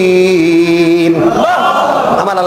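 A man chanting a Quranic recitation in Arabic into a microphone, holding one long drawn-out note that steps down in pitch and breaks off a little over a second in, then starting a new rising, wavering phrase.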